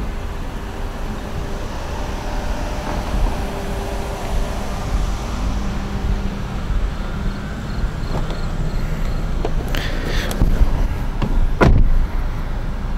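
Outdoor background noise with an uneven low rumble of wind and handling on a handheld microphone. A short rustle comes about ten seconds in, and a single sharp thump follows just before the end.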